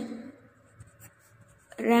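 Faint scratching of a pen writing on lined paper in a few short strokes, heard in the gap between spoken words.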